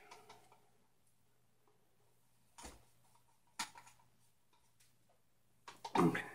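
A few soft clicks and taps from a plastic paint cup being handled at the edge of a canvas, spaced about a second apart over a faint steady hum.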